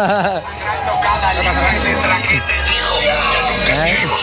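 Music with a singing voice and heavy bass playing from a car audio system with a subwoofer in the open boot. The deep bass swells strongest from about a second in to nearly three seconds.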